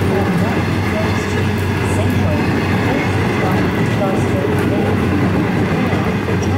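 Container wagons of an intermodal freight train rolling past, a steady loud rumble of steel wheels on rail.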